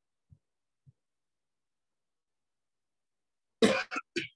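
A man coughs twice in quick succession near the end, short loud coughs.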